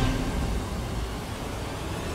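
Background score in a quiet passage: a low, sustained drone that slowly fades between louder stretches of dramatic music.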